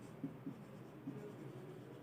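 Faint sound of a marker writing on a whiteboard, with two slightly louder strokes in the first half second.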